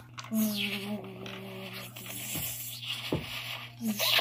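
A voice making a drawn-out buzzing zap sound effect, a held tone over a hiss, for a taser strike. Two light clicks follow near the end.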